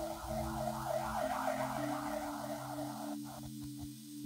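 Quiet ambient background music: sustained synthesizer pad chords that shift slowly, with a shimmering upper layer that fades out about three seconds in.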